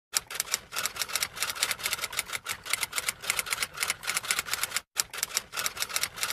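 Typewriter key-strike sound effect: rapid clacking keystrokes, several a second, with a brief pause about five seconds in, matching text being typed out on screen.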